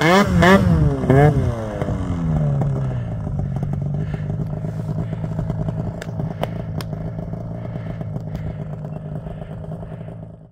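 Arctic Cat mountain snowmobile engine revved hard in quick up-and-down bursts in deep powder, then dropping back over a couple of seconds to a steady idle as the sled stops in the snow.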